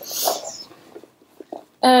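A short sniff, a quick breath in through the nose, at the start, followed by a woman beginning to speak near the end.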